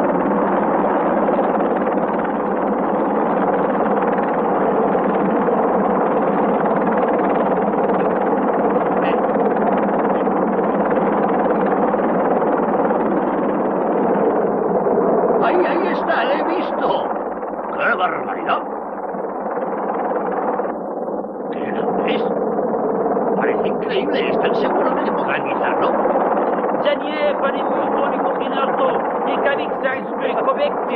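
A steady, layered drone, with men's voices talking in short bursts from about halfway through.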